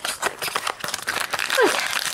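Small glued cardboard box being pried and torn open by hand: the stuck-down flaps crackle and rip in a dense run of sharp clicks and scrapes.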